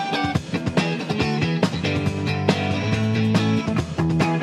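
Fender Stratocaster electric guitar playing a riff of picked notes and chords, settling into a held low note that stops just before the end.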